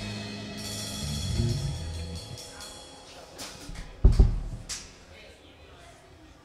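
Live band closing a song: the last guitar and bass notes fade out, then the drum kit plays a few closing cymbal hits, with the loudest, a bass-drum thump, about four seconds in.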